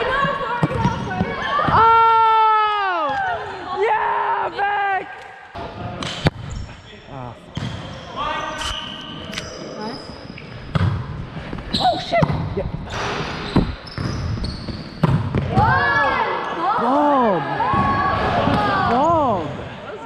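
Volleyball being played in an echoing sports hall: several sharp smacks of hands striking the ball and the ball hitting the floor, with players' wordless shouts, one long falling shout about two seconds in and more shouting near the end.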